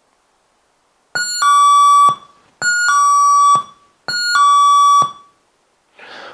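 A cheap sound-effect chip module driving a small loudspeaker through one NPN transistor plays an electronic two-note "ding-dong" chime, a short high note falling to a longer lower one, with a buzzy tone. The chime sounds three times, evenly spaced.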